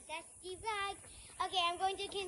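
A child singing quietly in short, held phrases.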